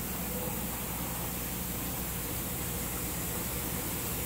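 Steady hiss with a low hum underneath and no distinct events.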